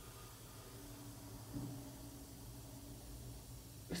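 Faint steady hiss of a bath bomb fizzing as it dissolves in bathwater.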